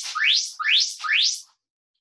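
Workout interval timer sounding four quick rising electronic chirps, about 0.4 s apart, signalling the start of the next work interval.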